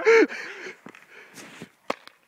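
A brief voice at the start, a few faint clicks, then a single sharp pop near the end: a paintball marker firing.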